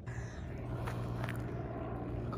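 Footsteps on a sandy dirt trail over a steady low rumble, with a couple of short knocks about a second in.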